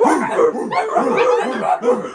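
A dog yipping and whining in a quick run of short cries, each falling in pitch.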